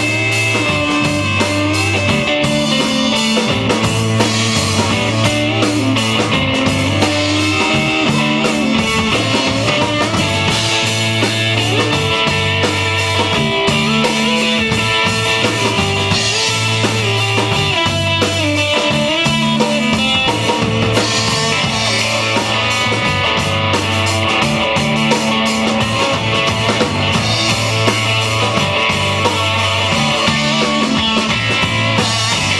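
Live rock band playing an instrumental passage: electric guitar carrying a melody over electric bass and a drum kit, with a steady repeating bass line.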